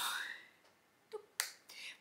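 A plastic powder compact, a Guerlain highlighter, snapping shut with one sharp click about a second and a half in.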